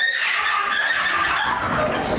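A crowd of teenagers screaming and cheering in a large hall, breaking out suddenly and holding at a high, shrill pitch.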